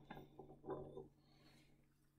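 Glass Erlenmeyer flask being moved and swirled on the benchtop: a sharp click, then a short clattering rattle of the glass base on the bench lasting about a second, then faint.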